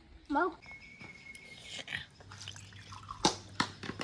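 Coconut water trickling from a green coconut into a drinking glass, with a few sharp drips.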